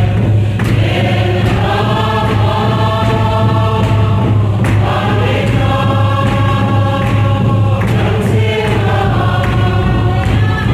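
A group of voices singing a hymn together in long, held phrases, over a steady low hum.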